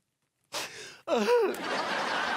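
After half a second of silence, a sharp intake of breath, then a short vocal exclamation that rises and falls in pitch.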